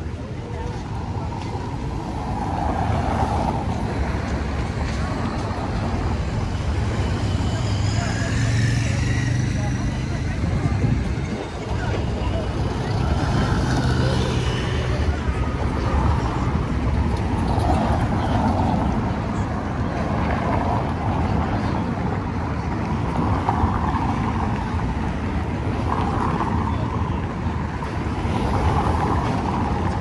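Busy city street: motor traffic running past, with vehicles passing close and their engine noise swelling through the middle, over the voices of passing pedestrians.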